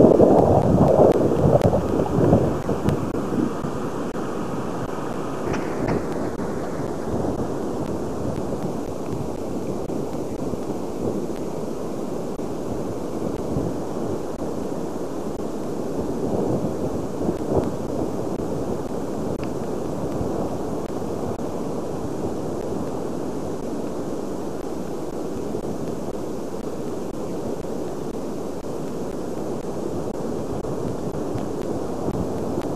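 Wind blowing across a camcorder microphone: hard, uneven gusts for the first few seconds, then a steady rushing noise.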